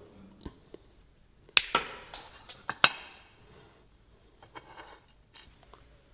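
Small metal objects handled on a hard tile surface: a steel paper clip worked with pliers and set down with an AA battery, giving a few sharp clicks and light clinks, the loudest about a second and a half in and just under three seconds in, with softer ticks later.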